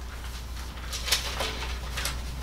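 Bible pages rustling as they are leafed through, a few short papery swishes, the strongest about a second in, over a steady low room hum.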